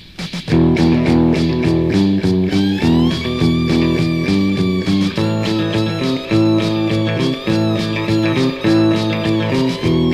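Instrumental passage of a rock song: a sparse drum beat gives way about half a second in to the full band with electric guitar chords and bass guitar. A higher melody line with bending notes comes in a couple of seconds later.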